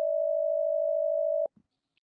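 Telephone ringback tone on an outgoing call: one steady beep of about a second and a half that cuts off abruptly, the line ringing before an answering machine picks up.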